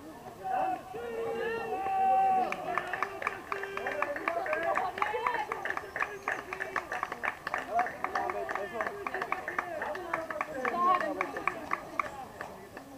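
Several voices of softball players calling and shouting over one another during a play, with a quick run of sharp clicks through the middle.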